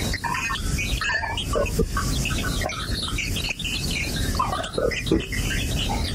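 Experimental electroacoustic noise music: short squeaky, chirp-like blips and glides scattered over a dense, steady low rumble.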